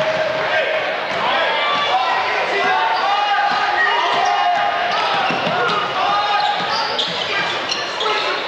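Basketball game sounds in a gym: the ball bouncing on the hardwood court amid the players' footsteps, under a steady murmur of spectators' voices echoing in the hall.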